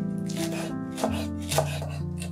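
A knife chopping fresh parsley on a wooden cutting board: a few separate strokes, the blade knocking the board, the loudest about one and a half seconds in.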